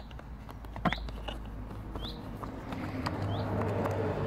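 A small bird chirping short single notes about once a second, over faint clicks and rustles as the chainsaw's air filter is unscrewed and lifted out. A low hum grows louder in the second half.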